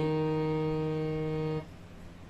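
Harmonium holding a single sustained note, its reeds sounding a steady, unwavering tone that stops abruptly when the key is released, about a second and a half in.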